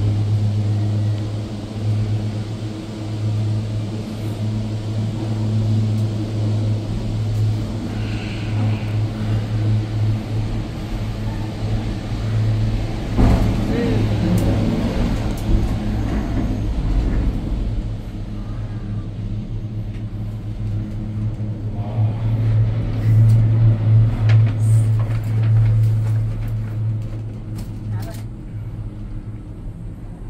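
Gondola cabin of the Ngong Ping 360 cable car riding out along the haul rope: a steady low hum throughout, fading toward the end. About 13 to 17 seconds in a louder rumble and rattle rises and dies away.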